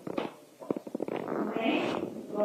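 Indistinct talking close to the microphone, with a quick run of short clicks or knocks around the middle.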